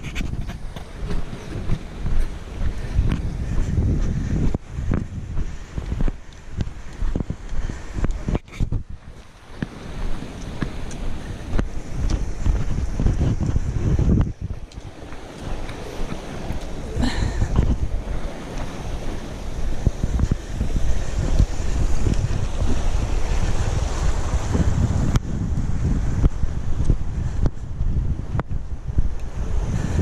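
Wind buffeting a GoPro's microphone: a loud, uneven, gusting rumble with a hiss above it, and a few scattered sharp clicks.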